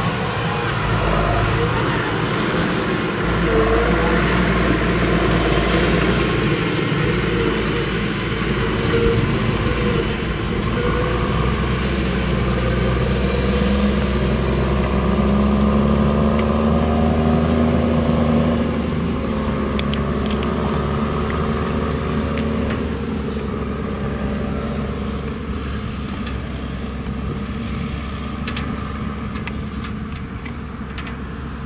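Case IH tractor's diesel engine running steadily as it pulls a silage trailer across a harvested maize field, its pitch shifting slightly past the middle and growing fainter over the last ten seconds as it moves off.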